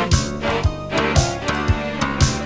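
Instrumental passage of late-1980s Soviet synth-pop played from a vinyl LP: synthesizer chords over a steady drum-machine beat, the kick about twice a second.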